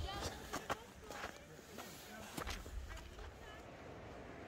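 Footsteps on a snowy gravel path, a few irregular crunching steps in the first couple of seconds, with wind rumbling on the microphone.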